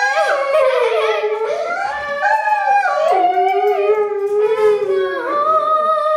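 A Doberman howling along with a young girl's singing: long held notes that slide up and down in pitch.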